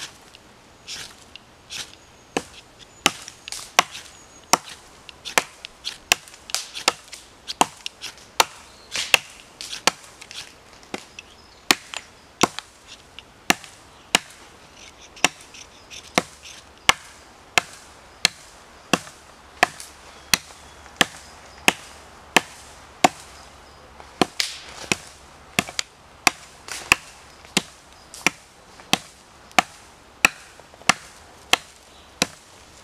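A steel striker scraped hard down a ferro rod again and again, about one and a half sharp rasping strikes a second, throwing sparks onto fine scraped fatwood dust.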